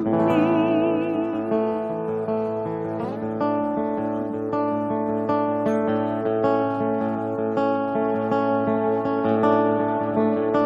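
Acoustic guitar playing sustained chords, picked and strummed in an even rhythm. In the first second and a half a held sung note with vibrato trails off over it.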